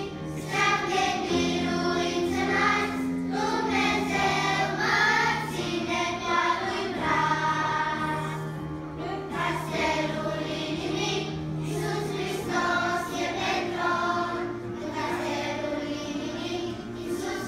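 Children's choir singing, with steady held low accompaniment notes underneath.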